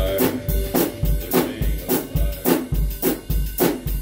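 Mapex drum kit played in a steady beat, bass drum and snare alternating, about two bass drum hits a second. The backing music stops in the first half-second, leaving the drums alone.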